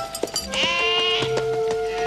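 Sheep bleating, with one loud bleat about half a second in, over background music with a steady repeating bass line.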